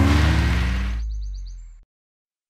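Cartoon whoosh of a car speeding off: a rushing noise that fades away over about a second, over a low held music note that dies out just before the end, followed by silence.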